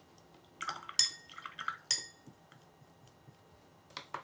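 A paintbrush being rinsed in a glass jar of water: a quick run of ringing clinks as the brush knocks against the glass, with water swishing, between about half a second and two seconds in.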